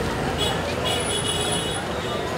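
Busy city street ambience: traffic and a crowd's babble of voices. A high-pitched tone sounds briefly about half a second in, then again for about a second.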